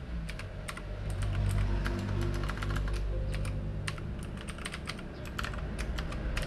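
Computer keyboard keys clicking irregularly as a password is typed, over a low steady hum.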